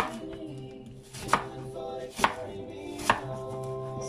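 Kitchen knife slicing an apple and knocking down onto a plastic cutting board: sharp knocks about a second apart, over background music.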